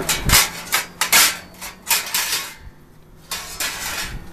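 Metal clinking and clattering on stainless steel as a knife is taken out of a steel tray: a quick run of sharp clinks over the first two seconds, a short pause, then a few more near the end.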